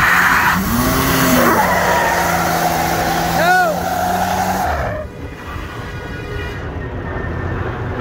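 Dodge Dakota pickup doing a burnout: the engine revs up once, then is held at high revs while the rear tyre squeals steadily. About five seconds in the squeal and high revs cut off suddenly, leaving a lower engine rumble.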